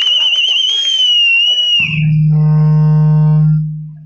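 Public-address feedback: a high, warbling squeal that cuts off about two seconds in, then a steady low electric buzz that fades away near the end.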